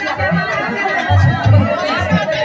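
Group of women singing together over a steady low drum beat, with chatter mixed in.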